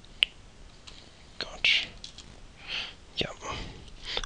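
A single sharp computer mouse click on the Commit button, then soft breathy whisper-like sounds close to the microphone.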